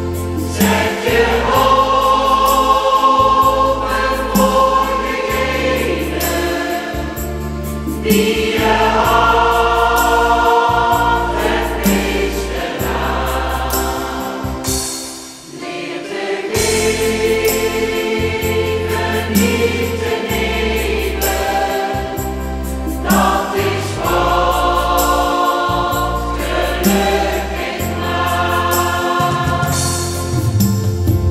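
Choir singing a slow song with instrumental accompaniment, held bass notes changing every couple of seconds beneath the voices. The music briefly drops away about fifteen seconds in, between phrases, then resumes.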